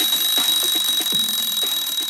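Kitchen timer alarm ringing loudly and continuously in a steady high tone, signalling that the countdown time is up.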